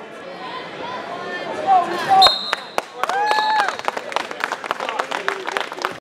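Gym crowd shouting at the end of a wrestling match. About two seconds in a high whistle blows twice, briefly, over a long yell, and then scattered clapping begins.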